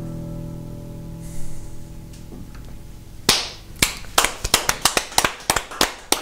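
A final chord on a digital piano, held and slowly fading over about three seconds. Then a couple of people start clapping, a sparse run of separate claps, several a second.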